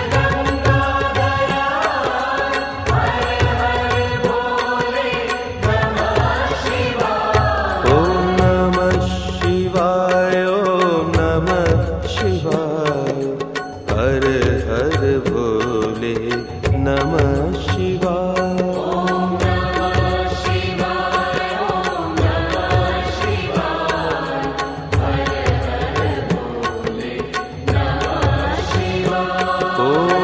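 Hindu devotional music: a sung, mantra-like chant over a steady drum beat. The drums drop out briefly around the middle.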